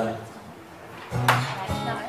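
A steel-string acoustic guitar strummed once about a second in, the chord ringing briefly. A man's short spoken "uh" is at the very start.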